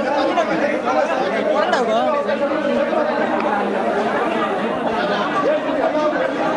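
A crowd of many voices talking and calling out over one another in a heated commotion, with no single voice clear.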